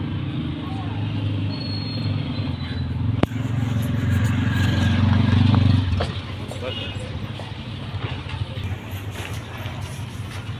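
An auto-rickshaw's small engine running close by, growing louder to a peak about five seconds in, then dropping away abruptly about a second later.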